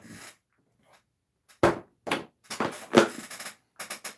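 Plastic tackle box being opened and rummaged through: quiet at first, then a run of knocks and clatters of plastic from about a second and a half in.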